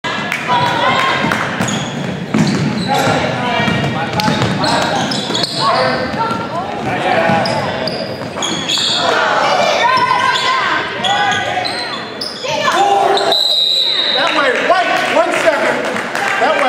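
Basketball game in a gymnasium: many voices of players and spectators calling out and shouting over one another, with a basketball bouncing on the hardwood floor. A short steady high tone sounds near the end.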